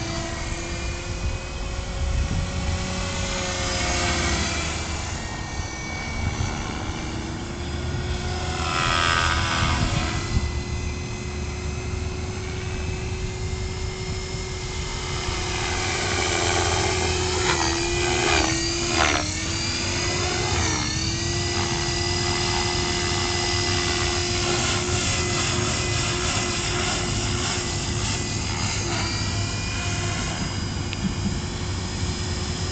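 Gaui Hurricane 425 electric RC helicopter in flight: a steady motor and rotor whine whose pitch drifts slowly and sags sharply a few times about two-thirds of the way through. The head speed is very low because the small 1800 mAh batteries are taxed hard.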